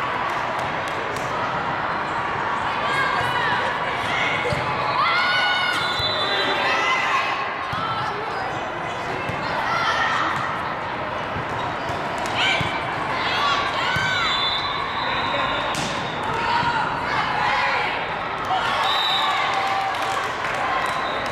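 Indoor volleyball play in a large, echoing hall: sneakers squeaking on the wooden court, sharp slaps of the ball, and voices of players and spectators throughout.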